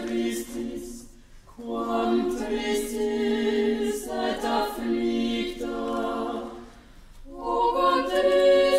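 Small choir of mostly women's voices singing slow, held chords in phrases: one phrase dies away about a second in, a long phrase follows, and a new, louder phrase begins near the end.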